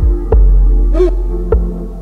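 Music soundtrack with a heavy, throbbing deep bass that swells in long pulses, crossed by sharp percussive clicks about once every second and a bit, and a short gliding tone about a second in.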